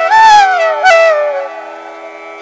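Background devotional music: a flute melody glides downward in one long phrase over a steady drone. The melody fades out about one and a half seconds in, and the drone carries on.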